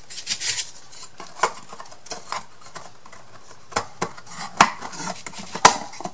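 Thin wooden craft-kit panels being handled and fitted together by hand: scattered light clicks, taps and rubbing as tabs are pushed into slots, with two sharper knocks in the second half.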